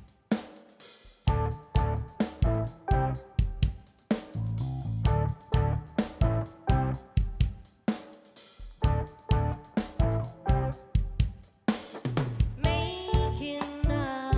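Live band playing a song's opening: a drum kit keeps a steady beat with kick, snare, hi-hat and cymbals under sustained instrument notes. A woman's singing voice comes in near the end.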